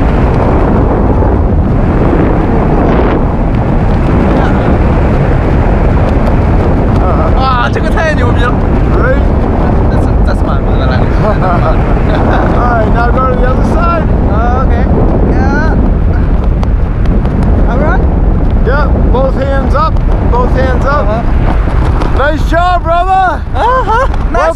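Wind rushing over the helmet or hand camera's microphone during a tandem parachute descent under canopy: a loud, steady rush with no breaks. Faint voices sound underneath it from about seven seconds in, growing clearer near the end.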